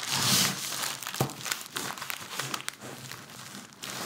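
Baking paper crinkling and rustling as a red velvet chiffon cake roll is rolled up and pressed tight inside it by hand, with a single light knock a little over a second in.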